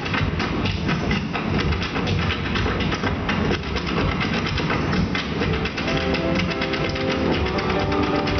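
Irish step dancers' hard shoes clattering in a rapid rhythm on the stage over loud show music. About six seconds in, a held melody line comes in over the beats.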